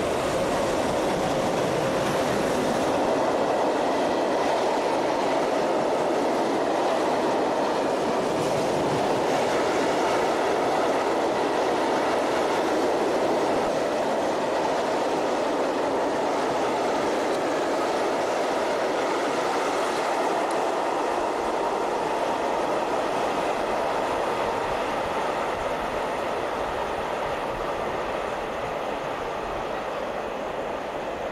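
Freight train hauled by a DB class 151 electric locomotive passing close by: a long string of hooded covered wagons rolling past with a steady running noise of wheels on rails, easing off a little over the last few seconds as the end of the train draws away.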